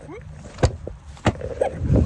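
Two sharp knocks, about half a second and a second and a quarter in, with fainter clicks and rustling between them and a quick run of clicks near the end.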